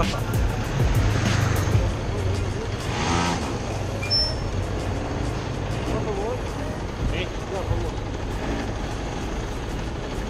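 Small street go-kart engines idling at a stop amid city traffic, a low steady rumble that is strongest in the first couple of seconds.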